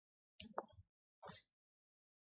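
Near silence, broken by two short, faint vocal sounds from a person close to the microphone, about half a second and a second and a quarter in.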